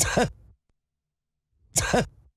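A short, breathy vocal sound with a quick rise and fall in pitch, played twice and the same each time, about a second and a half apart.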